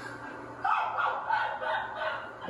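A young woman on a video call laughing in short, choppy bursts, starting about half a second in.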